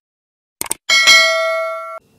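Subscribe-button animation sound effect: a couple of quick mouse-style clicks, then a bell ding that rings on, fading slowly, and cuts off suddenly at the end.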